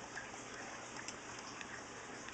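Faint, irregular clicks on a computer as photos are flipped through quickly, over a steady background hiss.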